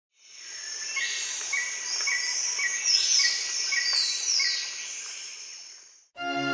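Outdoor nature sound of insects and birds: a steady high insect drone, a bird's short call repeated about twice a second, and a few falling whistles midway. It fades in at the start and fades out near the end.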